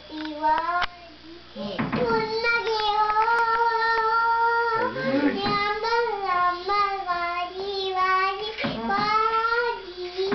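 A toddler girl singing a Tamil film song unaccompanied, in sung phrases with one long held note near the middle.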